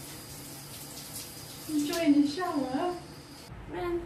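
Handheld shower head spraying water, a steady hiss, with a short high-pitched vocal sound about two seconds in. The water sound cuts off about three and a half seconds in.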